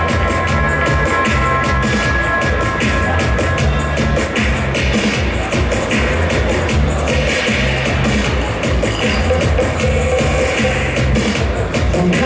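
Dub reggae riddim played from vinyl through a sound system: a heavy, repeating bass line under a steady drum beat, with held high tones over it for the first few seconds.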